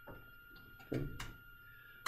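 Quiet room tone with a faint steady high-pitched whine. Just under a second in there is a short low sound, and a single sharp click follows shortly after.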